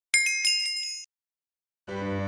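Bright chime sound effect, a shimmering ding of several high ringing tones with a few quick strikes, lasting about a second and cut off abruptly. Background music starts near the end.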